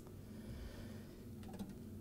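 Faint room tone with a low, steady electrical hum. A single short click comes right at the start.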